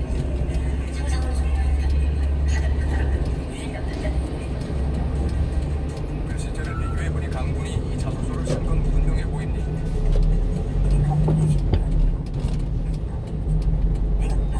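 Cabin noise of a one-ton refrigerated box truck moving slowly in traffic: a steady low engine and road drone. Faint broadcast voices and music play over it.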